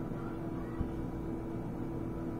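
Steady low background hum with a faint steady tone, and a single soft click a little under a second in.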